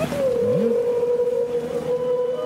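Killer whale calls: one long steady whistle-like call, with a short low rising call about half a second in.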